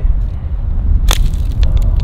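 Wind rumbling steadily on the microphone, with one sharp crack about a second in and a few lighter ticks after it.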